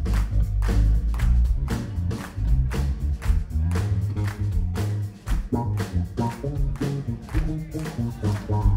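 Electric bass guitar solo played live and loud through an amplifier: deep notes moving quickly, with sharp percussive attacks throughout.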